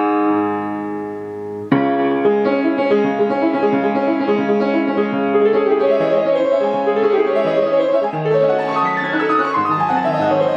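Halle & Voigt mahogany baby grand piano playing itself under its player system. A held chord rings and fades, then a little under two seconds in a new piece starts suddenly with quick, busy notes that carry on.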